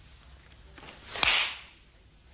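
A single sharp swish and snap from a fast karate technique, the cotton gi cracking as the move is snapped out, about a second in and dying away quickly.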